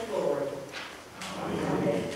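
Voices speaking in a large, echoing church sanctuary, the words blurred by the room's reverberation.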